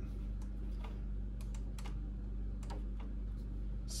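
Scattered light clicks and taps as a small digital scale and a glass shot cup are handled and set down on an espresso machine's metal drip tray, over a steady low hum.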